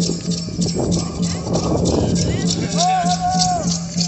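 Comanche dance song: voices chanting in a steady pulsing rhythm with rattles shaking in time, about four strokes a second. A single long held call, rising and falling slightly, sounds for about a second near the end.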